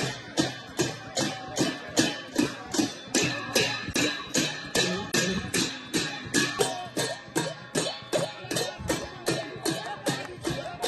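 Hand drum and cymbals beating a steady, even rhythm, about two to three strokes a second.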